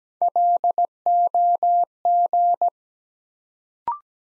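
Morse code sent at 17 wpm as a steady keyed tone, spelling the word "LOG" (dit-dah-dit-dit, dah-dah-dah, dah-dah-dit). It is followed near the end by a brief two-note courtesy beep stepping up in pitch, marking the end of the word.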